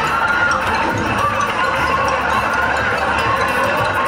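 Steady, loud casino din: a crowd's murmur mixed with a Seinfeld video slot machine's bonus-round sounds as its reels spin.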